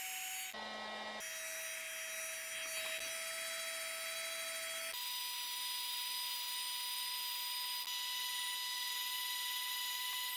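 Chicago Electric heat gun running steadily: a fan whine over a hiss of blown air. The whine steps up in pitch about halfway through.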